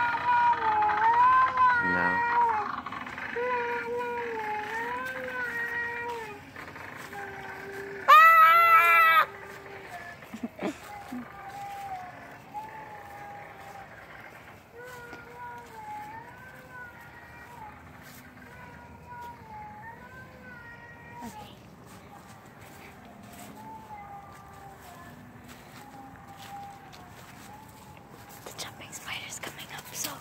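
A girl's voice singing a slow, wavering tune in long held notes, loud at first and then fainter from about six seconds in. About eight seconds in, a loud shrill scream cuts through for about a second.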